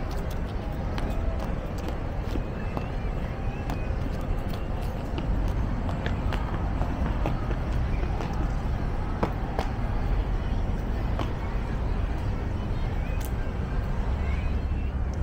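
City street ambience: a steady low rumble of distant road traffic, with faint, indistinct voices of people and occasional small clicks.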